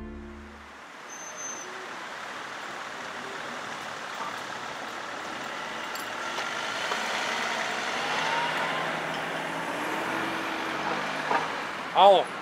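Outdoor street ambience: a steady wash of road traffic noise with a few faint passing tones, as a music sting fades out at the start.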